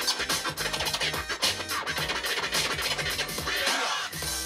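Turntable scratching: vinyl records pushed back and forth by hand in quick, choppy strokes, with short rising and falling sweeps, over a backing beat with a steady bass line.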